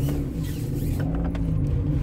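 Car engine and road noise heard from inside the cabin while driving slowly: a steady low hum whose pitch lifts slightly about a second in, then settles again.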